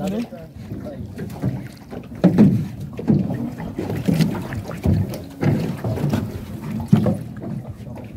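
Wooden canoe paddle dipping and pulling through river water in irregular strokes, with wind buffeting the microphone and a few light knocks of the boat.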